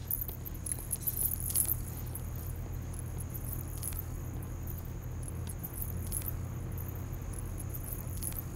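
Quiet room tone with a steady low hum and faint, scattered light clicks and clinks.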